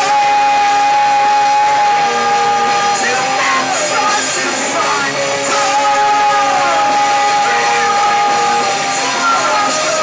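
A live rock band playing loud amplified music, with electric guitars, bass and drums, and a singer shouting the vocals over held notes.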